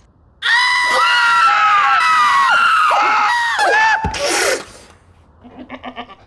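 A goat and a man screaming at the same time in long, loud, overlapping screams that last about four seconds, with a knock near the end.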